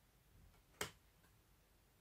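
A single sharp snap of a tarot card being laid down, a little under a second in; otherwise near silence.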